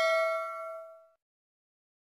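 Notification-bell ding sound effect of a subscribe-button animation, one bright chime ringing out and fading away about a second in.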